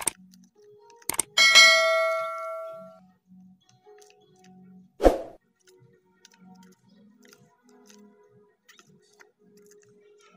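A mouse-click sound and then a notification bell ding, the stock sound effect of a subscribe-button animation. The bell rings loud and fades over about a second and a half. About five seconds in there is one short, heavy thump.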